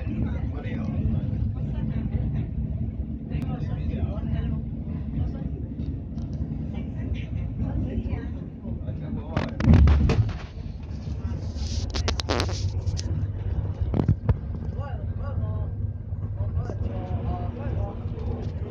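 Inside a moving bus: a steady low drone of engine and tyre noise. About halfway through comes a loud thump, and a brief hiss follows a couple of seconds later.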